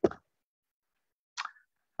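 Dead silence in noise-gated video-call audio, broken once by a short, soft sound about one and a half seconds in.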